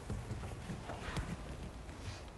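Chalk on a blackboard: faint, irregular knocks and scrapes as a line is drawn, over low room hum.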